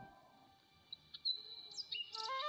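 After about a second of near silence, faint high-pitched chirps: a thin steady whistle-like tone and a short rising chirp near the end.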